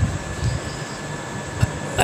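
Steady background noise with a faint high hum, and a few soft low thumps.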